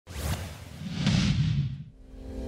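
Whoosh sound effects of a logo intro sting: a short swoosh, then a longer one about a second in over a low rumble, fading out near the end.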